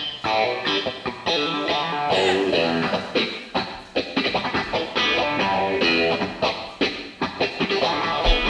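Electric guitar playing a melodic run of picked notes in a quieter passage of a progressive rock song, with other instruments underneath and no drums.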